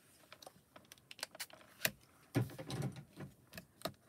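Card stock and a magnet handled on a stamping platform: a run of small clicks and taps, with a sharp click just under two seconds in and a duller knock soon after.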